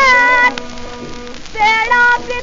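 A woman's voice singing a Hindustani film song from an HMV 78 rpm shellac record, heard with the disc's surface noise. A held note breaks off about half a second in, soft accompaniment carries the gap, and the singing returns near the end.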